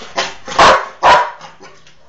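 A dog barking: three short barks about half a second apart, the last two loudest.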